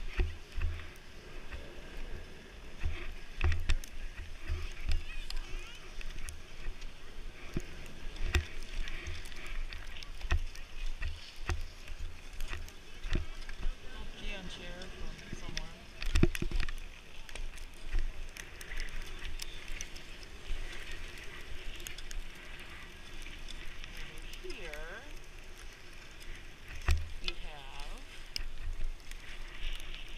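Wind buffeting a body-worn camera's microphone in irregular low thumps over the steady hiss of skis sliding on snow, with faint voices now and then.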